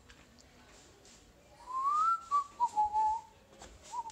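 A person whistling: quiet at first, then about halfway through a single whistled note slides up and wavers back down through a few lower notes, with a short note again near the end.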